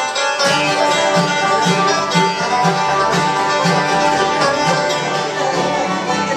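Bluegrass jam band playing a tune that starts right at the opening: banjo, acoustic guitars and mandolins over an upright bass on a steady beat of about two notes a second.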